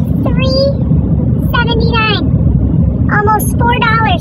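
Steady low rumble of a car heard from inside the cabin, with a woman's voice over it in short drawn-out bursts.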